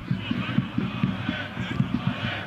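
Football stadium crowd noise: a steady hubbub from the stands with indistinct voices.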